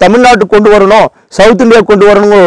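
A man speaking to the camera, with a short pause a little after a second in.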